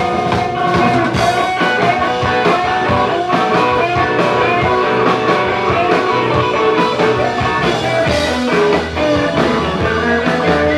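Live rock band playing an instrumental passage with no vocals: electric guitars over upright bass and drums.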